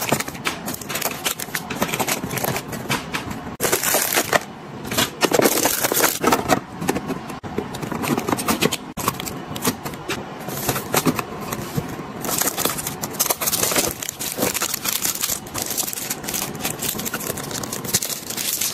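Candy-bar wrappers crinkling and rustling as the bars are handled and stacked into clear plastic fridge bins, with many small clicks and taps of packets against the plastic.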